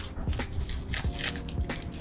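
Several short plastic clicks and crackles as a round badge is pressed and fitted into a plastic van grille, over quiet background music.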